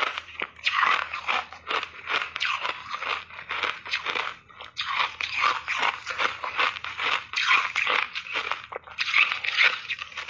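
Refrozen ice being chewed, a dense run of crisp crunches with a short pause about four seconds in.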